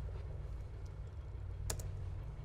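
Clicks from an HP laptop being operated: a faint click just under a second in, then two sharp clicks in quick succession near the end, over a steady low hum.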